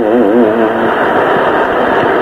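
A man's voice holding a drawn-out, wavering note that ends about a second in, followed by a steady hiss from the low-fidelity, muffled recording.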